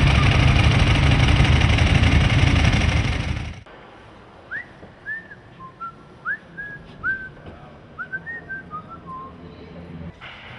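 A loud engine running for the first few seconds, cut off abruptly. Then someone whistles a short run of quick notes that rise and fall in pitch.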